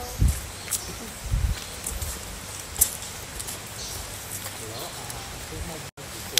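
Walking outdoors with a handheld phone: irregular low thumps of footsteps and handling, with rustle and a few sharp clicks, over open-air background.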